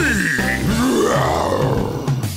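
Cartoon Tyrannosaurus rex roar sound effect, rising and then falling in pitch, over the song's backing music.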